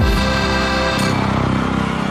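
Television station-ident jingle music: a held chord that slowly fades, with a light accent about a second in.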